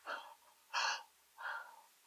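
Three short breathy gasps, about two-thirds of a second apart, from a woman with a large layered watermelon jelly block pressed into her mouth, laughing under her breath at a bite too big to take.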